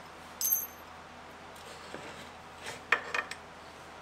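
Stainless steel bolt and washers clinking as they are handled and fitted into a mounting bracket: a short ringing clink about half a second in, then a few sharp metal clicks near three seconds.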